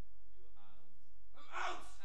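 An actor's voice: faint speech, then a short, loud, breathy outburst like a gasp near the end.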